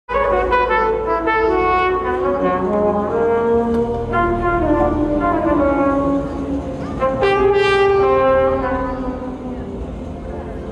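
Jazz trumpet playing a slow ballad melody in long held notes that slide from one pitch to the next, with a new phrase starting about seven seconds in.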